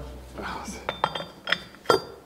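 Steel parts of a Zetor tractor's multipower reduction unit clinking together as a housing is fitted over the planetary gear set: several sharp metallic clinks with a short ring, the loudest near the end.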